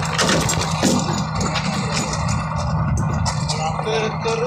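Concrete mixer engine running steadily, with scattered knocks and scrapes of wheelbarrows tipping wet concrete onto the roof slab.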